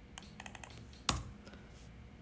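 Computer keyboard and mouse clicks: a few light taps in quick succession, then one louder keystroke about a second in.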